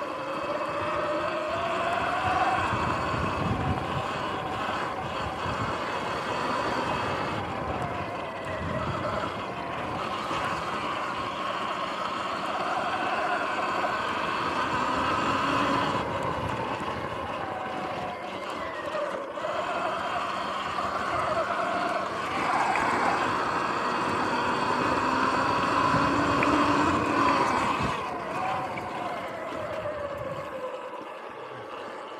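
Sur-Ron X electric dirt bike's motor whine, rising and falling in pitch as the throttle and speed change, over a steady rush of tyre and ground noise.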